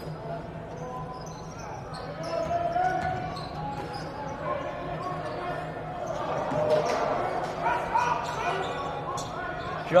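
Basketball dribbled on a hardwood gym floor during live play, with players' and spectators' voices calling out in the echoing gym, loudest toward the end.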